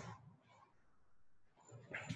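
Near silence: room tone, with a brief faint sound right at the start and a faint rise just before the end.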